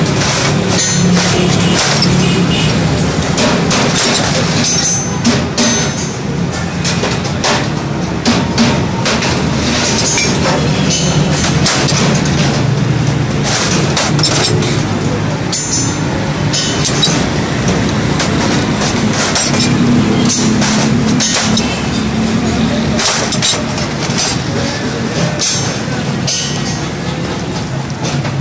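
Hand snips cutting thin stainless steel sheet, giving short crisp clicks of the blades at irregular intervals, over background music and a steady rumble of traffic.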